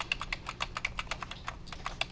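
Computer keyboard typing: a rapid, irregular run of key clicks.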